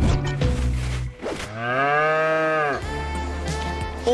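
A dairy cow moos once, a single long call about a second and a half in that rises and then falls in pitch, over background music.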